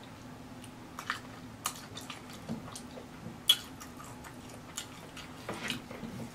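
Close-miked mouth chewing a bite of Flamin' Hot Cheetos–crusted turkey leg with cheese sauce: irregular wet smacks and clicks, the loudest about three and a half seconds in.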